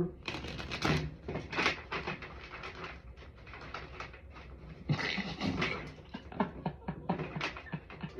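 A deck of tarot cards being shuffled by hand: riffling and then overhand shuffling make a dense run of quick card flicks, with louder rushes about one and a half seconds and five seconds in.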